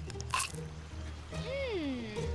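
Soft background music for a cartoon, with a short squishy click about half a second in and a voice-like sound near the end whose pitch rises and then falls.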